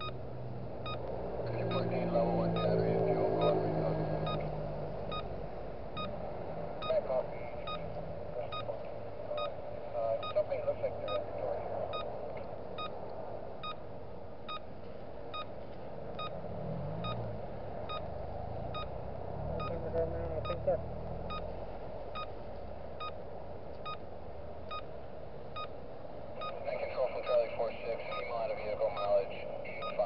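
Dashcam audio inside a stopped car: a low steady hum under faint, muffled voice chatter, with a faint regular tick about twice a second.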